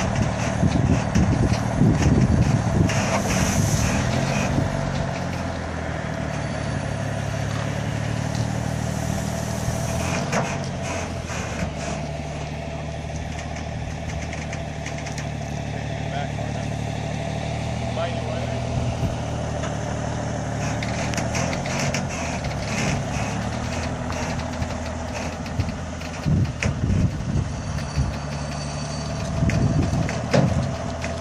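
Semi truck's diesel engine pulling a heavy houseboat on a trailer at walking pace. It works loudest in the first few seconds, then runs steadily.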